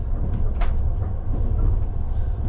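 Low, steady rumble of a moving vehicle, with one brief click a little over half a second in.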